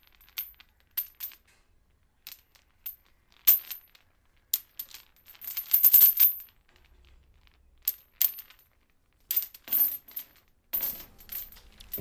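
Metal chains clinking and rattling in irregular, scattered clanks, thickening into a loud rattling burst about halfway through.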